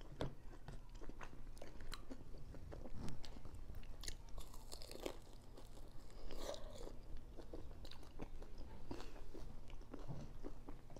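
Close-miked eating of chicken wings: bites, chewing and small crunches with wet mouth sounds, picked up by a clip-on microphone.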